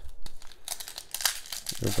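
Foil booster-pack wrapper crinkling and tearing as it is pulled open by hand, a run of crackly rustles starting about half a second in.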